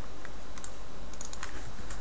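Computer keyboard keys tapped, a few scattered keystrokes, over a steady low hum.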